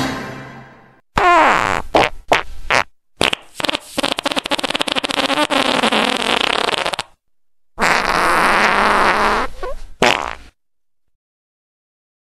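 Outro music fading out, then a run of loud, rasping, fart-like noises: a few short ones, one with a falling pitch, then two long buzzing ones, ending about ten and a half seconds in.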